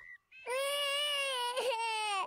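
Voice-acted crying of a cartoon toddler: one long wail that starts about half a second in and breaks briefly near the end.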